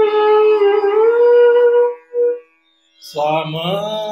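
Bansuri (bamboo flute) playing a phrase of Raga Kedar: a held note that glides upward, then a short note and a brief pause. About three seconds in, a man's voice sings the phrase at a lower pitch. A faint steady drone tone sounds underneath the flute.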